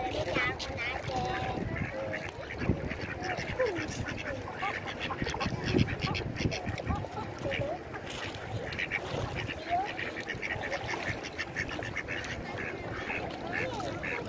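A flock of mallard-type ducks quacking, many short calls following one another close by, over a background of water and ambient noise.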